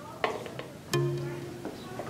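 Background music of plucked (pizzicato) strings: a single note rings out about a second in, preceded by a faint click.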